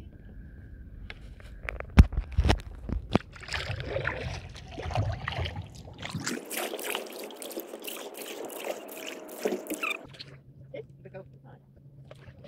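Stand-up paddleboard paddle strokes in calm lake water: splashing and dripping, with a few sharp knocks about two and three seconds in.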